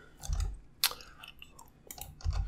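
A few sharp clicks of a computer mouse and keyboard, with a dull low thump about a third of a second in.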